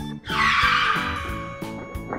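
A car tire-screech sound effect over background music: a loud hissing screech starting about a third of a second in and slowly fading away.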